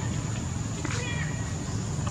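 Baby macaque giving one short, high-pitched falling squeak about a second in, over a steady low rumble.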